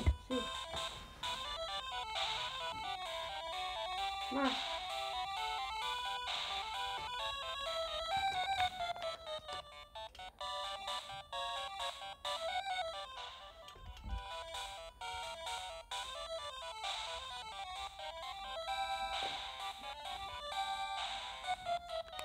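Chiptune game music playing from a red Game Boy handheld's small built-in speaker, turned up: a bright, beeping melody of quick stepping notes.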